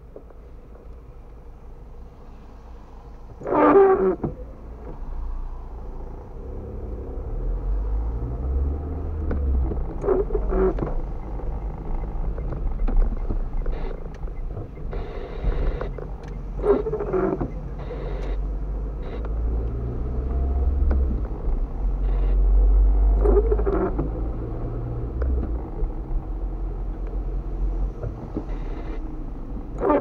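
Inside a car's cabin in the rain: windscreen wipers sweep about every six and a half seconds on an intermittent setting, the first sweep the loudest. Beneath them a low engine and road rumble grows after a few seconds as the car moves off.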